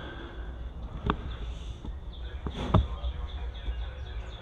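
A low steady rumble with a few sharp knocks, two of them loud and about a second and a half apart, and faint short bird chirps near the end.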